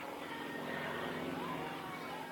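Yak-55's nine-cylinder radial engine and propeller running steadily high overhead during aerobatics, under faint spectator chatter.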